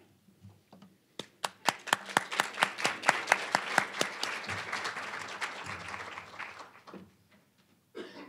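Audience applauding. A few scattered claps about a second in swell into full applause with some sharp single claps standing out, then die away about seven seconds in.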